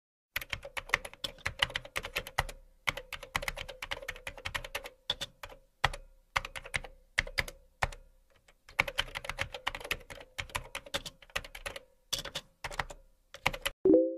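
Computer keyboard typing in quick runs of keystrokes with short pauses between, then a short chime at the very end.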